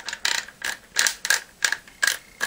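Mossberg 500 shotgun's magazine tube cap being turned by hand to screw the barrel down onto the magazine tube. It gives a series of sharp ratcheting clicks, about three a second.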